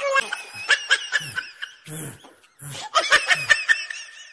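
A person snickering and laughing in quick, stuttering bursts, in two runs with a short lull in between.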